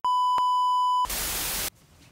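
Colour-bars test tone: a steady single-pitch beep for about a second, with one click partway through. It is followed by a burst of television static hiss that cuts off suddenly, leaving faint room tone.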